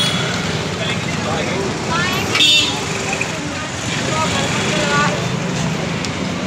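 Busy night-market street ambience: steady traffic noise and a crowd of people chattering, with a short vehicle horn toot about two and a half seconds in.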